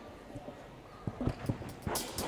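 A quiet lull with a few light, unevenly spaced taps from about a second in.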